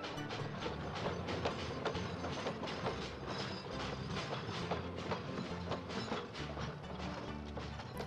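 Cartoon steam-train sound effect of a locomotive rolling along the track, a steady run of clicks, over light background music.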